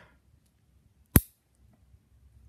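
A single sharp click about a second in: a Cat5e cable's RJ45 plug latching into the jack of a USB 3.0 gigabit Ethernet adapter.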